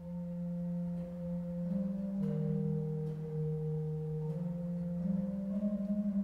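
Church pipe organ playing slow, sustained chords, the notes moving every second or so.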